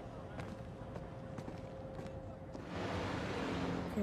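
Drama series soundtrack ambience: a low rumble with a faint steady tone, then about two and a half seconds in a louder, even hiss swells up and holds.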